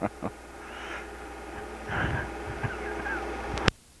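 A man laughing, then chuckling softly, over a steady electrical hum. The hum cuts off with a sharp click near the end.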